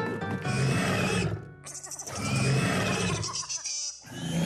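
Animated dragons roaring as loud as they can, two long roars, the second starting about two seconds in, over background music.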